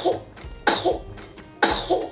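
A baby sneezing three times in quick succession: short, sharp bursts under a second apart.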